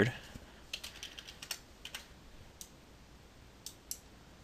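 Computer keyboard typing: a quick run of quiet keystrokes as a username and password are entered, then two clicks close together near the end.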